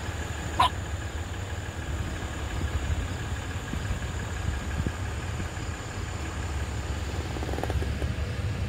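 Vehicle engine idling, a steady low rumble.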